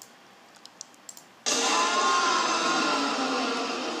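A few faint clicks, then about a second and a half in a video's soundtrack starts abruptly and loudly: music with held tones, played through computer speakers.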